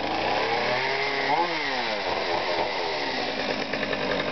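Two-stroke gasoline chainsaw running at high throttle, its engine pitch rising and then falling about a second in as the throttle is worked.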